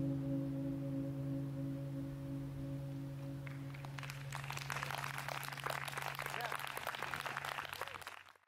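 A jazz quartet's last held chord rings out and fades. Audience applause starts about three and a half seconds in and grows as the chord dies away.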